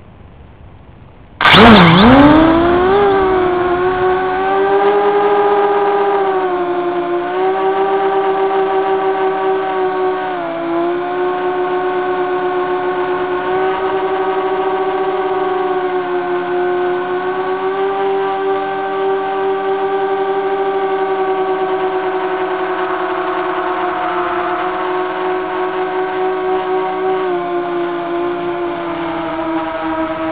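DYS X230 quadcopter's brushless motors and propellers, heard through its onboard camera: near quiet at first, then about a second and a half in they spin up suddenly and loudly for takeoff. They settle into a steady buzzing whine of several tones in flight, the pitch dipping and rising a little with throttle.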